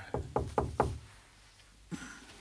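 Four quick knocks on a door, evenly spaced within the first second.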